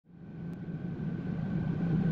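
Steady low hum of an Airbus A319's cabin air-conditioning and systems, heard inside the cabin while the jet sits parked at the gate, with a faint steady whistle above it. It fades in from silence over the first second or so.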